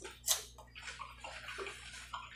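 Close-miked wet eating sounds: a sharp mouth smack as food goes in, then soft, irregular wet chewing clicks while seafood is chewed.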